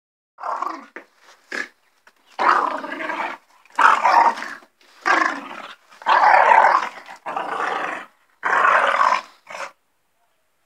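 Small black dog growling in repeated bouts, each up to about a second long, with short breaks between them.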